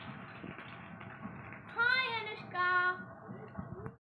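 A steady outdoor background noise, with a high voice calling out twice about halfway through: the first call slides up and down in pitch, the second is held briefly on one note.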